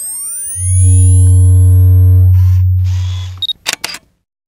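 Logo-sting sound effect for a photo studio: rising electronic whine sweeps, then a deep steady hum for about three seconds. Near the end come a short high beep and a quick run of sharp camera-shutter clicks.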